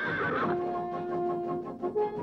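Cartoon horse whinnying, its call falling in pitch and ending about half a second in. A held note of background music follows.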